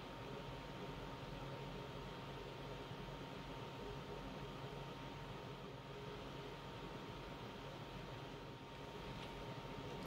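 Quiet room tone: a steady, even hiss with a faint low hum and a thin steady tone, and no distinct events.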